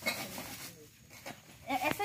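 Plastic bag wrapping rustles briefly at the start. Near the end a goat begins a wavering bleat.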